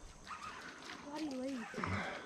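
A person's faint, wordless voice: a short wavering hum about a second in, with a brief low sound near the end.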